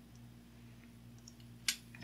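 Faint room tone with a steady low hum, and a single short click near the end, a computer mouse click placing a point of the sketch arc.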